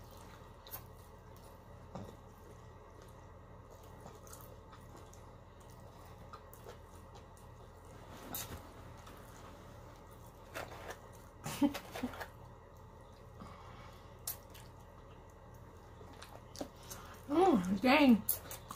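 Close-miked eating sounds: chewing and wet mouth noises with scattered soft clicks of a plastic fork in a foam take-out container, a few louder short sounds about two-thirds of the way through. A woman's voice starts just before the end.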